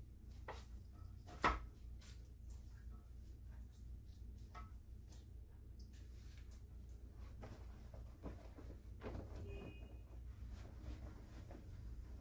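Hands working a client's hair at a salon shampoo basin: soft handling sounds with scattered small clicks and knocks, one sharper click about a second and a half in, over a steady low hum.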